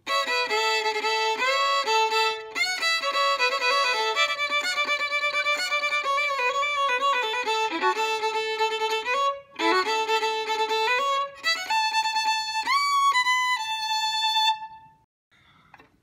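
Solo violin played as a fiddle, bowing a quick run of notes, often two strings at once, with a short break about nine seconds in. The tune ends on a held note about fourteen and a half seconds in.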